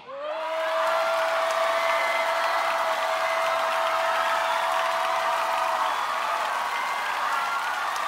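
Studio audience applauding and cheering right after a K-pop song ends, with a steady tone held under it that stops about six seconds in. The sound cuts off abruptly at the end.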